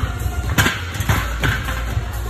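Music with a steady bass beat. A loud clank comes about half a second in, then two lighter knocks, as a big tire on a hinged tire-flip machine is flipped over onto its metal frame.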